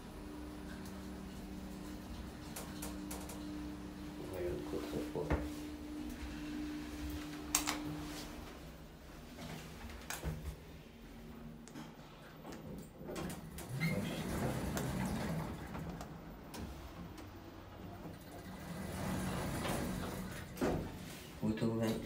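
OTIS Gen2 lift running: a steady low hum from the drive and machine as the car travels, stopping about eight seconds in. Then come clicks of the car's push buttons being pressed and the sliding car doors moving.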